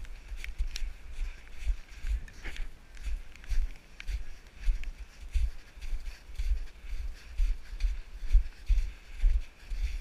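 Footsteps on snow picked up by a body-worn action camera: a steady rhythm of dull thumps, a little under two a second, as the wearer walks uphill.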